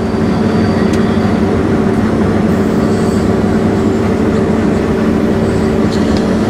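New Holland CR8.80 combine harvester running under load while threshing, heard inside its cab: a loud, steady machine hum with a constant low drone.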